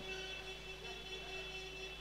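A faint, steady hum made of several held tones, unchanging throughout, with no other distinct event.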